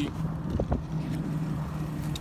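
2018 Porsche Cayenne's 3.6-litre V6 idling, a steady low hum, with a faint tap about two-thirds of a second in.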